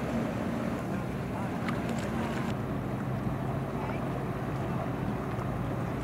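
Twin Yamaha 150 outboard motors on a Grady-White center console running at low speed as the boat passes, a steady low hum over a haze of wind and water noise.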